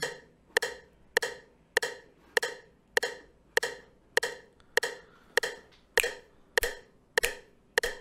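Online metronome ticking at a steady tempo: a short, sharp click a little under twice a second, about 100 beats a minute, evenly spaced.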